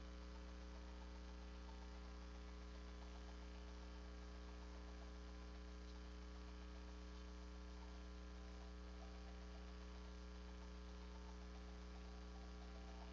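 Steady low electrical mains hum with a faint hiss. It stays the same throughout, with nothing else heard.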